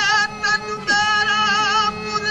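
Qawwali singing: a high voice holds long notes with a wavering vibrato, with short breaks between them, over a steady low drone.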